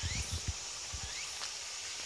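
Low, dull thumps of footsteps and of a hand-held phone being jostled while walking, over a faint outdoor background with short high insect calls about once a second.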